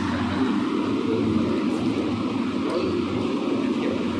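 Steady, even background noise with a low hum underneath, unchanging throughout.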